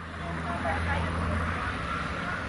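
Outdoor ambience: a steady low rumble and hum that eases off about one and a half seconds in, with faint distant voices.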